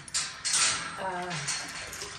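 A woman's voice talking, mixed with short bursts of clattering noise.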